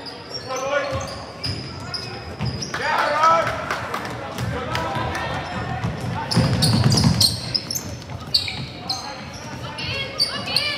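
Basketball game on a hardwood gym court: the ball bouncing, sneakers squeaking, and players and spectators calling out, with a loud shout about three seconds in.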